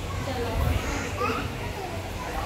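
Children's voices chattering and calling out at play, with the murmur of a busy room behind.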